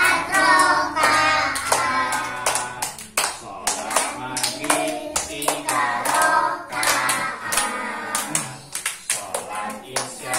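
A group of young children and a male teacher singing a children's song about the daily prayers together, clapping their hands along in time.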